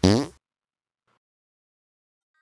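A short comic squelch sound effect as tomato sauce is put on a clay chicken cutlet, lasting about a third of a second at the very start.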